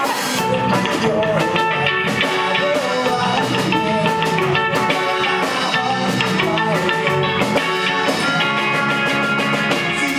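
Live rock band playing an instrumental passage: two electric guitars through amps, electric bass and a drum kit, loud and steady.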